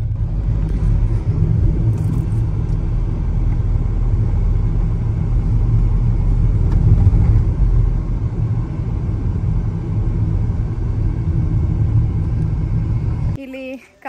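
Steady low road rumble of a car driving along, heard from inside the cabin; it cuts off abruptly near the end.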